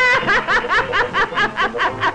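A high cartoon voice laughing in a quick, even run of "ha-ha-ha" syllables, about six a second.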